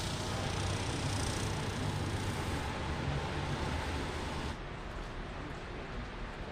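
Small engine of a walk-behind snowblower running steadily with a low drone. About four and a half seconds in it gives way to quieter, even street noise.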